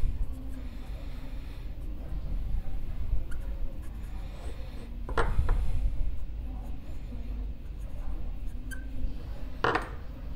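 Sharpie marker writing on the back of a steel coffee-grinder burr: faint rubbing strokes of the felt tip. Two sharp clicks stand out, about five seconds in and near the end.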